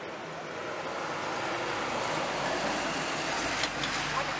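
Street traffic noise: a vehicle going by, its sound swelling over the first couple of seconds and holding steady, with a low rumble near the end.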